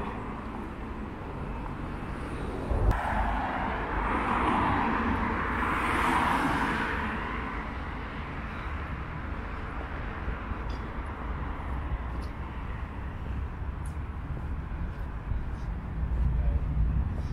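Street traffic: a vehicle passes close by, rising from about three seconds in to a peak about six seconds in and then fading, over a steady low rumble of road traffic.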